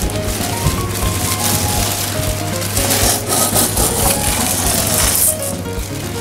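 Green coffee beans scooped from a plastic bag with a metal bowl, rustling and rattling against the bowl and the crinkling bag, densest in the middle seconds.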